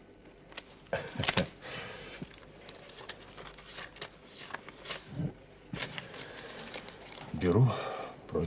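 Paper rustling and crinkling in a series of small clicks as a man handles a slip of paper or banknote. A short vocal sound comes near the end.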